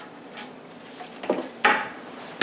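Kitchen utensils clattering: a light knock a little over a second in, then a louder, sharp clatter with a brief ring.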